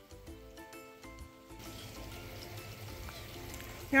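Soft music with a stepping melody, then from about one and a half seconds in the steady sound of running water from a tiered stone garden fountain rises and covers it.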